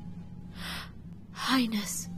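A woman's short, sharp intake of breath, then a woman starts speaking, over a low, steady background music drone.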